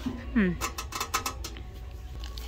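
A quick run of light metallic clicks and rattles, about a dozen in a second, from a metal roasting pan and its wire rack knocking together as they are handled.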